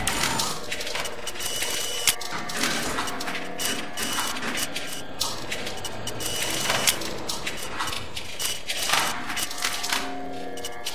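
Electronic music in a sparse passage of irregular, mechanical-sounding clicks and ticks over a few faint held tones, with the deep bass that was playing just before dropped out.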